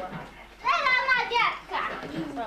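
A young child's high-pitched voice, one burst of talk or calling out lasting about a second near the middle.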